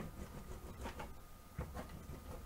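A clear plastic hand tool slid back and forth over plastic sheeting as it rolls out a rope of soap dough. It makes a low scuffing rumble with a few light clicks.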